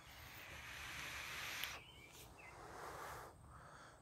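A drag on a vape device: a faint airy hiss of air drawn through the mouthpiece for a little under two seconds, then a softer breath out of the vapour.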